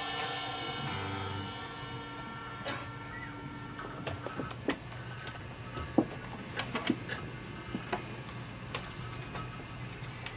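The band's last sound dies away over the first second or two. Then comes a low steady hum from the stage with scattered clicks and knocks: handling noise from the instruments between songs.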